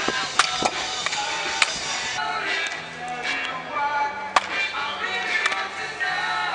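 Music playing steadily, with several sharp cracks of a bat hitting baseballs in batting practice: one just under half a second in, one at about a second and a half, and the loudest just after four seconds.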